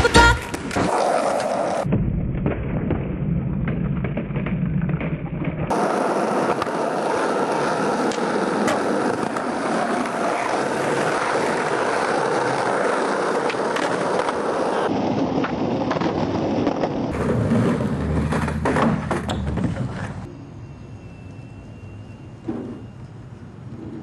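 Skateboard wheels rolling on concrete and wooden ramp surfaces, with sharp board clacks and slaps as tricks are tried and bailed, over several short clips. Near the end it drops to a quieter hiss with a faint steady high tone and a single thump.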